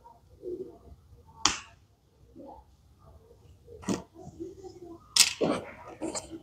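Small hard plastic toy pieces clicking as they are handled and pressed together: single sharp clicks about a second and a half in and near four seconds, and a quick cluster of clicks just after five seconds.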